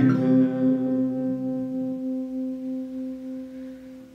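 Acoustic guitar's final chord, struck once and left to ring out, fading slowly to the end of the song.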